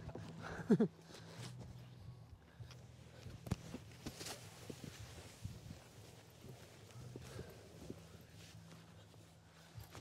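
A short laugh, then faint, scattered knocks and taps as a person climbs a fold-down aluminium ladder into a rooftop tent and moves about inside it, over a steady low hum.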